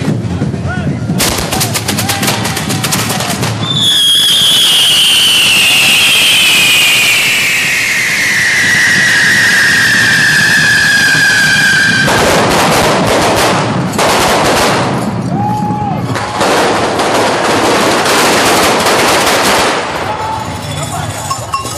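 Correfoc fireworks going off. First comes a rapid run of crackling bangs, then a long whistle that falls steadily in pitch for about eight seconds, then dense crackling and hissing of fireworks spraying sparks.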